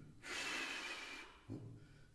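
A man blowing a breath of air out through his mouth: a hissing breath lasting about a second that fades away. A brief, faint voiced hum follows near the end.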